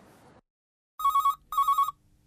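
A telephone ringing: two short electronic trilling rings in quick succession, after a moment of dead silence.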